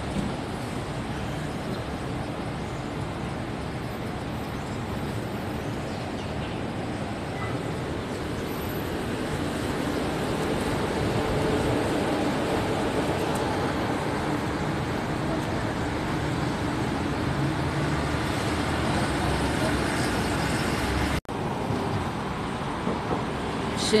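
City street traffic: a steady rumble of cars and buses going by on the road, growing louder about halfway through. It cuts out for an instant near the end.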